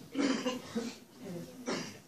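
A single cough near the end, amid faint, indistinct talk.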